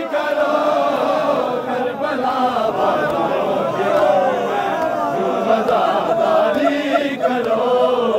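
A crowd of male mourners chanting and lamenting together in a Shia noha, many voices overlapping at once rather than one lead singer.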